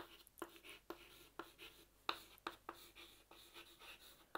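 Chalk writing on a chalkboard: faint, irregular taps and short scratches, about three strokes a second, as letters are written.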